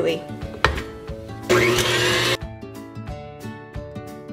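Electric mixer whipping egg whites for meringue, still runny and short of stiff peaks, heard loudly for just under a second about a second and a half in, starting and stopping abruptly. Background music plays throughout.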